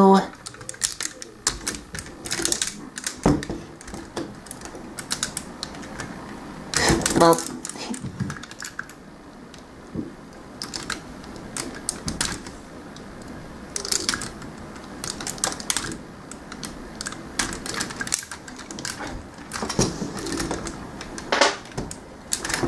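A small tool clicking and scraping against the plastic forearm panel of a Transformers Masterpiece Optimus Prime figure as the panel is pried open: irregular sharp clicks and taps throughout.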